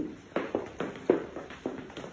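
Footsteps of hard-soled shoes walking briskly on a wooden floor, a short knock about four times a second.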